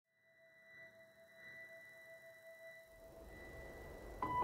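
Faint, steady pure tones fading in out of silence, a quiet sustained musical drone; near the end the lowest tone drops away and a low hum comes in.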